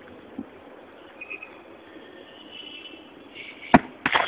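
A 15 kg granite stone dropped onto pavement, landing with a single sharp thud near the end.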